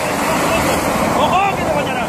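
Flash-flood surge of muddy water rushing down a dry gravel channel, a loud steady noise of churning water, with a voice shouting faintly in the second half.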